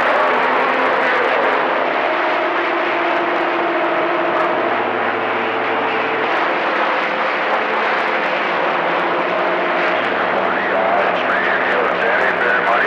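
CB radio receiver on channel 28 picking up skip between transmissions: a steady rushing hiss with several low steady tones that come and go. A warbling voice starts to come through near the end.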